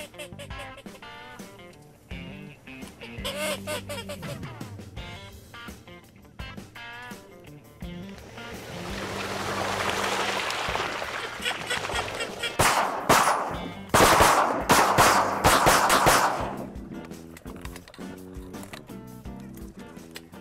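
A rapid volley of shotgun blasts, many shots in quick succession a little past halfway, over background music.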